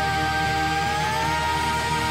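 A male rock singer holding one long belted note that steps up in pitch about a second in, over the band's accompaniment.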